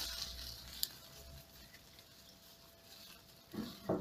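Faint rustling of apricot leaves and twigs as a hand reaches in among the branches, with one sharp click about a second in.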